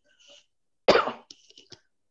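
A person coughs once, sharply, about a second in, followed by a few small throat-clearing sounds.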